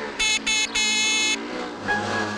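Moped horn on a Simson Schwalbe scooter sounding three times: two short toots, then a longer one.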